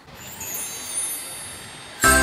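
Outdoor background noise: a steady rush with no clear tone that swells a little about a second in and then eases off.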